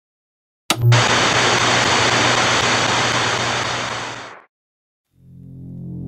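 Loud hiss of static-like noise over a steady low hum, cutting in suddenly about a second in and fading out a few seconds later. Near the end a low electronic drone swells in.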